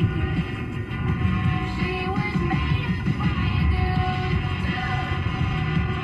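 Music playing on the car radio, heard inside the car's cabin.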